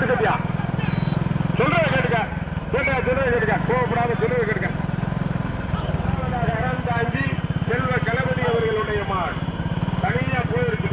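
A pack of motorcycle engines running steadily, with men's high, loud shouts rising and falling over them again and again.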